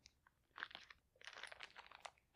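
Faint crinkling of a clear plastic packaging bag being handled, a few soft crackles about half a second in and a scatter more in the second half.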